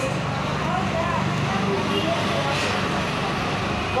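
Steady low rumble of street traffic with faint scattered voices over it, and a brief hiss about two and a half seconds in.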